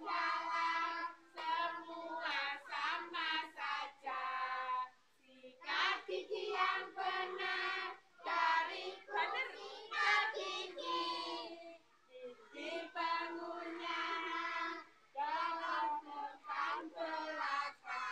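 A group of young children singing together in unison, in short phrases broken by brief pauses.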